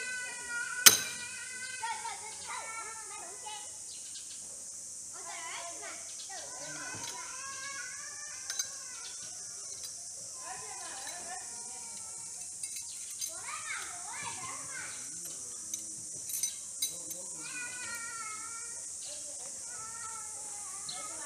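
A thrown knife striking and sticking in a wooden stump target, a single sharp thunk about a second in. After it, children's voices in the background over a steady high-pitched hiss.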